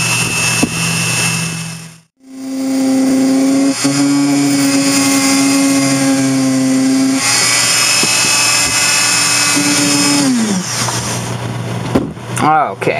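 Dremel rotary tool running with a grinding stone, grinding down the open end of a soldering tip: a steady motor whine with a rough grinding hiss that grows heavier about seven seconds in. The sound drops out briefly about two seconds in. Near the end the whine falls in pitch as the tool winds down.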